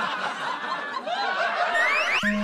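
Light laughter and chuckling, with a short rising whistle-like sound effect near the end.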